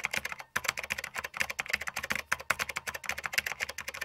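A rapid, steady stream of sharp clicks, many a second, like fast typing on a computer keyboard.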